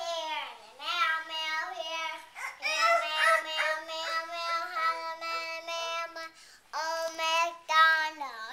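A young child singing a wordless tune in long held notes, pausing briefly twice.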